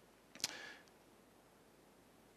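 A single short click about half a second in, with a brief rustle fading after it, in otherwise near silence.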